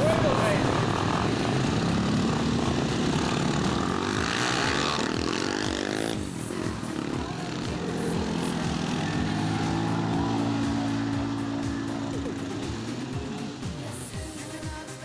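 Quad (ATV) engines running as a line of quads drives past, a steady engine drone that is strongest in the second half.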